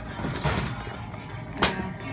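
Rustling handling noise from the handheld phone, with one sharp knock about one and a half seconds in as a hand reaches a sneaker on a metal wire shelf. Background music plays underneath.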